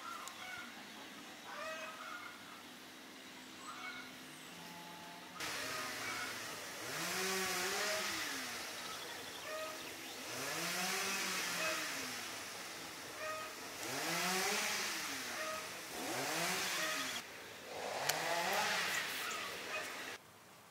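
An engine off in the background, revving up and falling back again and again, about every two seconds from around six seconds in, over a steady hiss. Birds chirp now and then.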